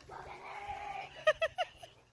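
A person's voice: a high note held for about a second, then a quick run of short laughs.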